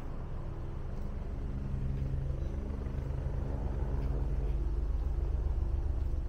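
Low, steady engine hum from an unseen engine, growing louder over several seconds and easing slightly near the end.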